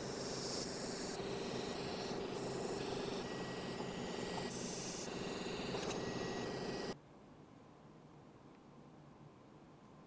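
TIG welding arc on a stainless steel exhaust collector: a steady buzzing hiss with a steady tone under it. It stops about seven seconds in, leaving only faint room hiss.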